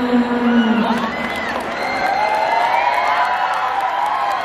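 Concert crowd cheering and whooping, with many overlapping shouts building from about two seconds in. A low voice is held for about the first second.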